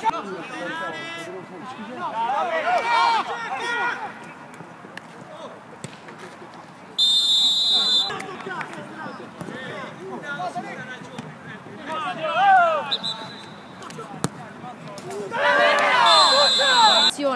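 Players shouting during a five-a-side football game, with ball kicks and a short, shrill whistle blast about seven seconds in.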